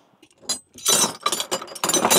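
Metal hand tools clinking and rattling against each other as a toolbox is rummaged through: one click about half a second in, then a quick run of clatter.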